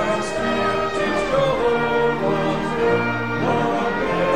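A man singing a solo with vibrato into a microphone, over instrumental accompaniment, in sustained held notes.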